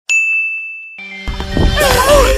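A single bright ding, a chime sound effect, struck once and ringing down over about a second. Near the end, voices and background noise come in.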